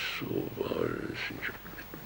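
A man's voice, low and indistinct: short mumbled, nasal sounds with no clear words.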